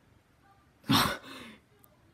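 A person's single short, breathy laugh about a second in.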